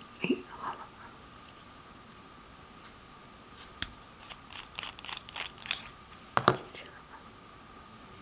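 A pen's metal barrel being unscrewed from its grip section by hand: a run of small, sharp clicks and ticks from the threads and fingers, then a louder knock about six and a half seconds in as the parts come apart and the barrel is set down. A short voice-like sound comes just after the start, and a faint steady high hum runs underneath.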